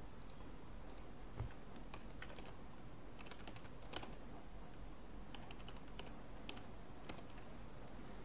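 Computer keyboard typing: faint, irregular runs of key clicks, with one low thump about one and a half seconds in.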